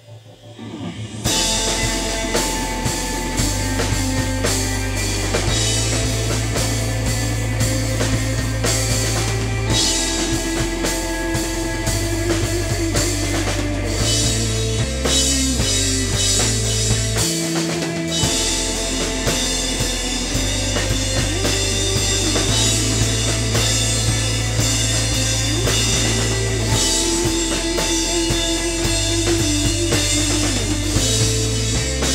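A rock band playing live: drum kit with cymbals, electric guitar and a Korg Triton keyboard, with sustained low bass notes. After a brief break right at the start, the full band comes back in together about a second in and plays on loudly.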